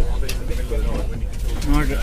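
Steady low rumble inside a train carriage, with a man's low murmuring voice. He starts speaking near the end.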